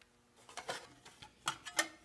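A few faint, scattered clicks and taps, irregular and short.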